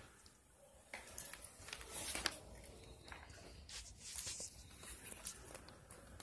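Faint rustling with scattered light clicks and scratches, as of pet rats scrabbling about in their cage.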